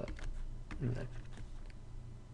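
A few scattered light clicks, irregularly spaced, over a low steady hum.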